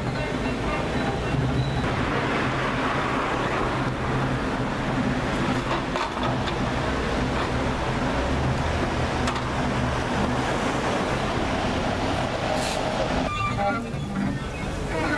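Experimental improvised music: a double bass and a violin are bowed in a steady low drone under a dense rushing, scraping noise, with a few sharp knocks.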